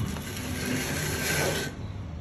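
A steady scraping rustle of grasscloth wallpaper being worked at its freshly trimmed edge. It lasts about a second and a half, then stops.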